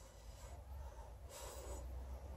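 Two short, faint puffs of breath blown through a straw onto wet acrylic paint, about a second apart, the second louder, pushing the paint across the canvas.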